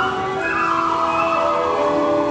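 Stage musical number performed live: a large cast chorus singing long held notes over the accompanying orchestra.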